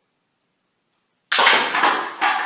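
Homemade spring-powered double-barrel airsoft shotgun firing wax slugs: after a silent pause, a sudden loud clack about a second and a quarter in, followed by a short clatter.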